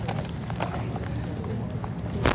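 Steady low hum from the hall's microphone sound system, with scattered small clicks and taps.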